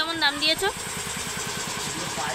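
A brief voice in the first moments, then a small engine running steadily with a fast, even low thudding.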